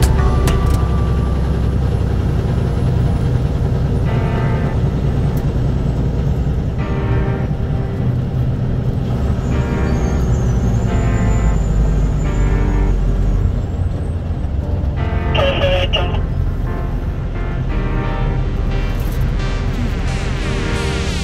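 Steady road and engine rumble inside a moving vehicle's cabin, with music playing over it.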